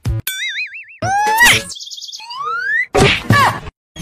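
Cartoon sound effects: a wobbling boing, then several rising whistle glides, and a whack with bending tones about three seconds in, then a brief silence.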